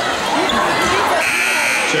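Gymnasium scoreboard horn sounding as one steady tone for just under a second near the end, over crowd chatter in the gym.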